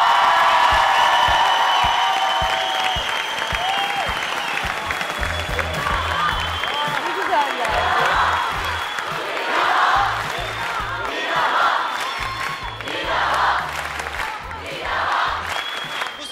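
Music playing while a studio audience cheers and applauds, with the cheering swelling up again and again from about halfway through.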